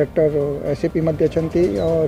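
Speech: a man talking in short phrases with brief pauses.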